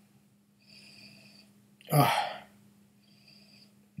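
A man's single short, breathy, voiced exhale about two seconds in, as he sips whisky, with faint breathing before it.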